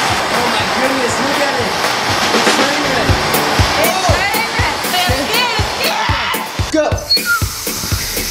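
MAP-Pro gas hand torch burning with a steady hiss under background music with a beat; the hiss cuts off suddenly about seven seconds in.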